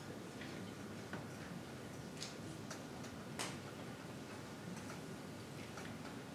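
Quiet hall room tone with a handful of scattered small clicks and knocks, the sharpest about three and a half seconds in, from players and audience settling between pieces.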